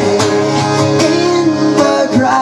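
Acoustic guitar strummed in a steady rhythm during an instrumental passage of a live song, a stroke about every half second.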